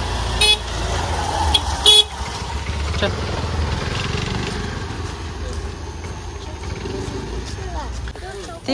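Two short, high-pitched beeps of a motor scooter's horn, the second louder, over the low running of scooter engines moving slowly along a lane.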